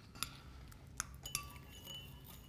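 Tableware clinking at a diner table: three light clinks of glass or china, the later two leaving a short ring.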